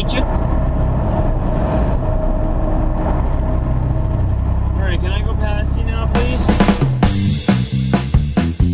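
Steady low drone of a semi-truck's diesel engine and road noise heard inside the cab. About six seconds in, music with a regular beat starts.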